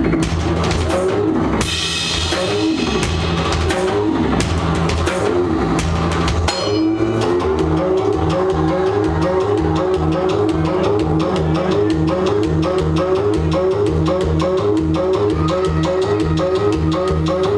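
Loud live music from a drum-and-electronics duo: a drum kit played with a repeating synthesised bass and keyboard pattern. A wash of high noise sounds from about two to four seconds in, and shortly after six seconds the music settles into a fast, even repeating sequence over the drums.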